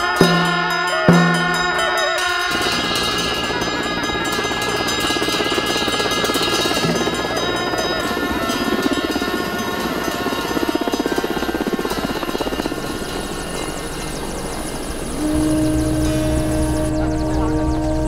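Tibetan Buddhist ritual music from monks: a frame drum struck about once a second under long held notes of gyaling horns. After about two seconds it gives way to a Mil Mi-17 transport helicopter running, its rotor beating rapidly. From about fifteen seconds in, a low, steady musical drone takes over.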